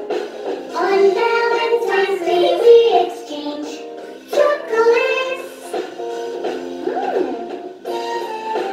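A children's English song about holidays: a sung melody over an instrumental backing track, with a short break in the phrase about halfway through.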